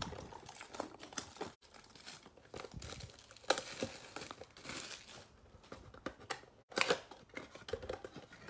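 A cardboard blaster box of trading cards being torn open by hand, with plastic wrapping crinkling: irregular rustling and sharp crackles, loudest about three and a half seconds in and again near seven seconds.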